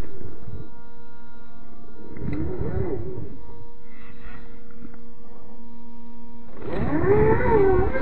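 Slowed-down sound of an RC rock crawler's 540 electric motor and drivetrain at quarter speed, heard as a deep wavering growl that rises and falls in pitch. It swells about two seconds in and again, louder, near the end, over a faint steady hum.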